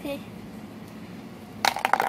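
A small plastic toy falls and clatters on the floor, a quick run of sharp knocks with a short ring near the end.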